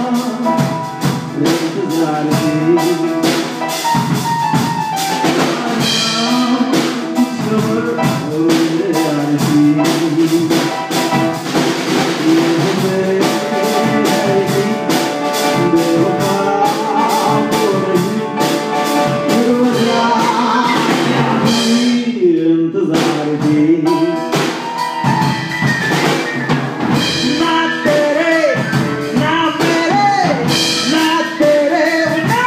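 Live instrumental passage on an acoustic grand piano with a drum kit keeping time. The drums drop out briefly about two-thirds of the way through, then come back in.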